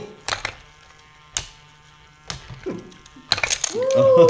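Loopin' Chewie toy's small battery motor buzzing steadily as it swings the arm around, with sharp plastic clacks of the flipper levers, a few spread about a second apart and a quick cluster near the end. A voice exclaims at the very end.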